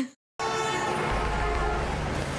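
Audio from a TV drama episode cuts in after a brief gap: a steady drone of several held tones, with a low rumble joining about a second in.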